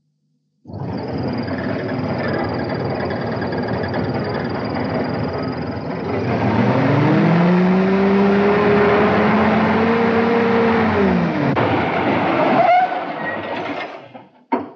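Willys jeep engine running as the vehicle drives. The engine note climbs a little past the middle, holds for a few seconds, then falls away. A brief sharp sound comes near the end.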